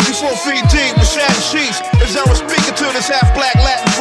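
Hip hop music: a remixed boom-bap beat with deep kick drums that slide down in pitch, and a rapped vocal over it.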